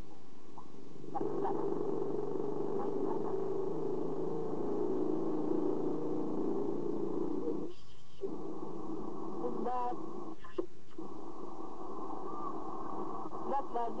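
Muffled background voices, their sound cut off above the low-middle range, with a short break a little after halfway and a few brief rising-and-falling vocal sounds around ten seconds in and again near the end.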